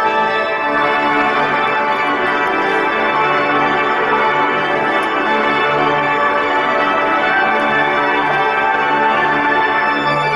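Church pipe organ playing a slow piece of held chords, steady and loud.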